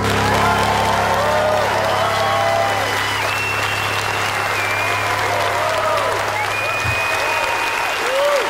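Concert audience applauding, with whoops and whistles rising over the clapping. The last piano chord is still sounding underneath and stops about seven seconds in.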